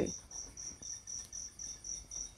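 Steady high-pitched chirping in the background, evenly pulsed about five times a second, from an insect such as a cricket.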